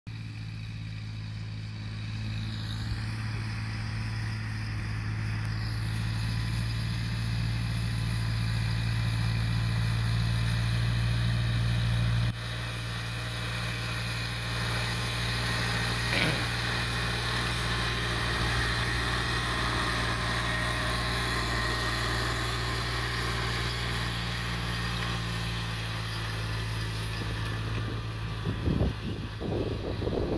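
New Holland tractor's diesel engine running steadily while pulling a cultivator through dry soil, a constant low drone. The sound drops a little in level about twelve seconds in.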